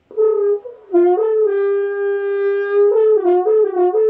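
Double French horn played solo in a short phrase. One high note, the written high D, is held for about a second and a half. Quicker notes dip a step below it and climb back, and the note is held again near the end.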